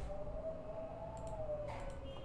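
Low background sound: a faint steady whine with a few soft clicks, one about a second in and a couple near the end.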